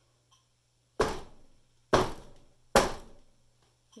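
A hammer striking a wet puddle of acrylic paint on a stretched canvas three times, the blows about a second apart, each a sharp hit that dies away quickly.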